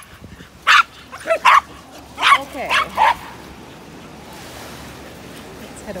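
A small dog barking in short, sharp yaps, about six of them over the first three seconds, then a steady hiss of background noise.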